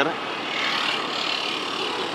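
Steady road traffic noise, an even rush of passing vehicles.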